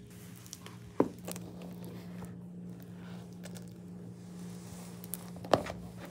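A silicone mould being flexed and peeled off a cured resin casting: quiet rubbery squishing and crinkling, with a sharp click about a second in and another near the end.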